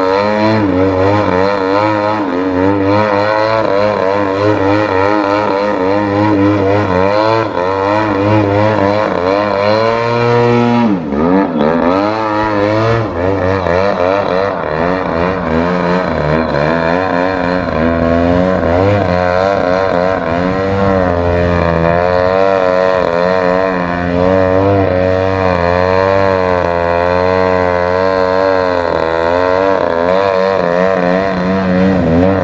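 Engine and propeller of an Extreme Flight 85-inch Extra 300 EXP radio-controlled aerobatic model airplane, the throttle constantly rising and falling as it holds nose-up hovers. About eleven seconds in, the pitch drops sharply and then climbs back up.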